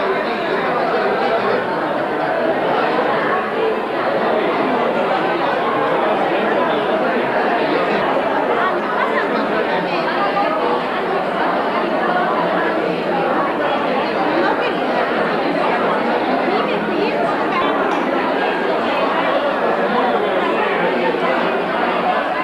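Crowd of people seated at tables, many talking at once: a steady din of overlapping conversation with no single voice standing out.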